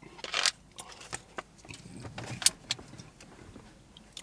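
Handling noises from a plastic soft-drink bottle: a short rustle near the start, then a handful of sharp light clicks spread through the next few seconds.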